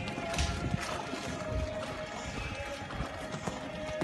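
A horse's hooves thudding on sand as it lands over a fence and canters on, with music playing throughout.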